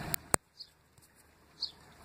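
Two sharp clicks of a phone being handled within the first half second, then a few faint, short bird chirps.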